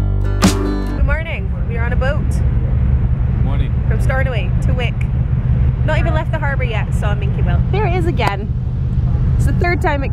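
Acoustic guitar music ends about a second in, then a woman talks over the steady low rumble of a ferry under way, heard on its open deck.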